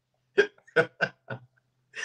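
A man laughing in four short, quick bursts.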